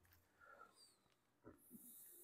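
Near silence: room tone in a pause between spoken words.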